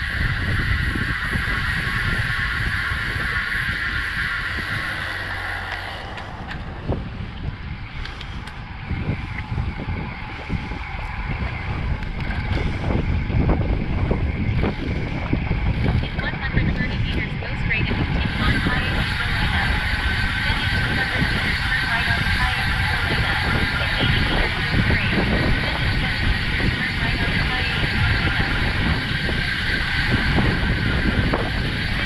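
Wind buffeting the microphone of a camera on a moving bicycle, over a steady rumble of road noise. A higher steady whir runs through the first few seconds, drops away, and returns from a little past halfway.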